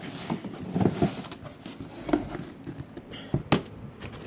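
Cardboard shipping box being handled and opened: scattered rustles and scrapes of cardboard, with a sharp knock about three and a half seconds in.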